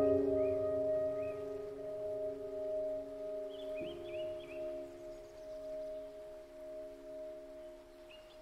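Digital piano playing a slow, soft improvisation: a chord held and slowly fading, with one of its notes moving to a lower one about halfway through.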